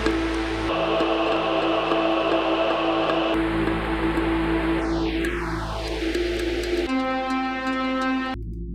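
Arturia Pigments 5 softsynth sounding held notes built from an audio loop fed in through its sidechain audio input, run through its filter as the filter type is changed. The tone shifts in sections: a phaser notch sweeps steadily downward, then about seven seconds in a comb filter gives a ringing tone of evenly spaced pitches.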